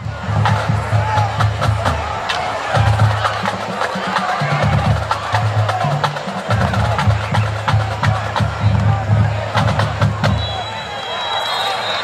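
Music with a deep bass line stepping between notes and percussion, over crowd chatter; the music cuts in suddenly at the start and stops about two seconds before the end. Near the end a referee's whistle blows a long, pulsing blast.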